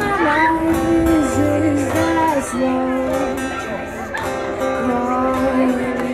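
Live acoustic music: a woman sings long held notes that slide between pitches over strummed acoustic guitars.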